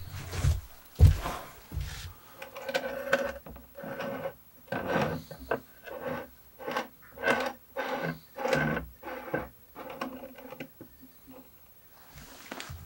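A couple of heavy knocks, then a run of short rubbing scrapes, about two a second, with a faint squeak in each: a potted conifer in a ceramic pot being set down and turned by hand on a wooden table.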